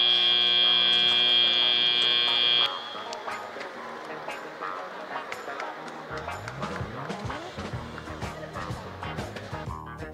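Robotics-competition end-of-match buzzer: one loud, steady tone with many overtones, lasting about three seconds and cutting off sharply. After it come quieter crowd chatter and music in the hall.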